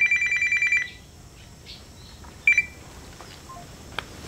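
Mobile phone ringtone: a high, fast-pulsing electronic trill for about the first second, then a short burst of it again about two and a half seconds in.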